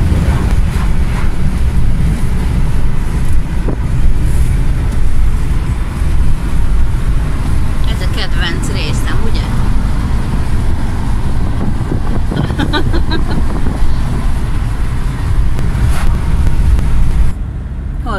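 Steady low road and wind noise inside a car cruising at highway speed. The noise drops suddenly in level near the end.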